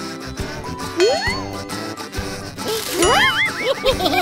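Cartoon sound effects over light background music: a bright ding with a rising slide-whistle glide about a second in, then a burst of warbling up-and-down tones near the three-second mark.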